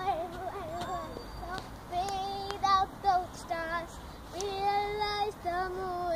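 A young girl singing unaccompanied, in a clear child's voice, holding two long notes, the longer one about halfway through.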